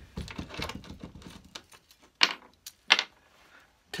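Small metal clicks and clinks as a brass hinge and its holding screws are handled on a wooden workbench: a flurry of light ticks in the first second or so, then a few sharp separate clicks about two to three seconds in.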